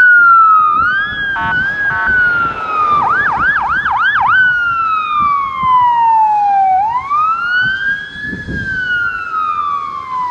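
Electronic siren on an armoured police vehicle: a slow falling wail, two short buzzing blips, then about six quick yelps a few seconds in, followed by a slow rise and another long falling wail.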